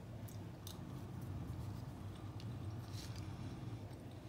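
A person chewing a spoonful of Russell avocado, with a few faint short mouth clicks scattered through, over a steady low hum.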